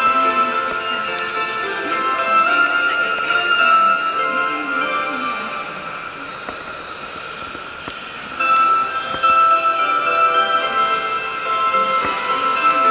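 A chime melody playing over the platform's public-address speakers, the kind that announces an approaching train. It fades out a little past the middle and starts again about two seconds later.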